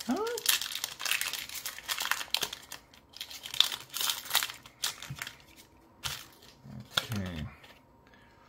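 Foil wrapper of a Pokémon booster pack crinkling and tearing as it is ripped open by hand, in a quick run of crackling rustles over the first five seconds. A short vocal murmur comes near the start and again near the end.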